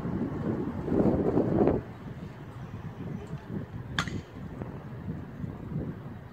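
Wind buffeting the microphone: a loud rumble for the first two seconds that drops away suddenly, then goes on more softly, with a single sharp click about four seconds in.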